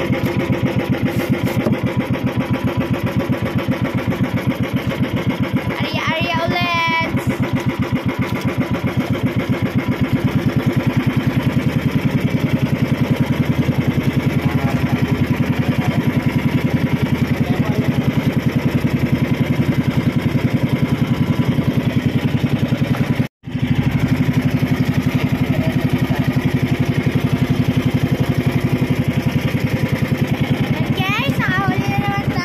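Engine of a motorized outrigger boat (banca) running steadily at cruising speed, loud and close, with an even rapid firing beat. A brief voice cuts in about six seconds in, and the sound drops out for an instant about two-thirds of the way through.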